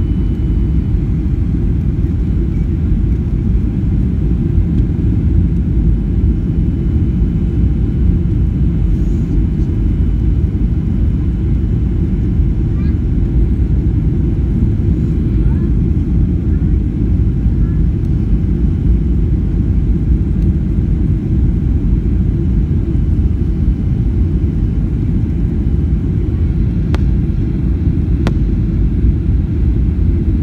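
Steady low rumble of an airliner's engines and airflow heard inside the passenger cabin during descent, even in level throughout.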